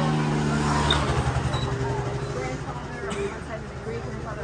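Small motorbike engine passing close through a narrow market lane, loudest about a second in and then fading away, with crowd chatter around it.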